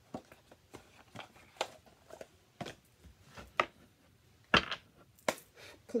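Tarot cards being shuffled and handled by hand: a string of soft, irregular clicks and taps, the loudest about four and a half seconds in.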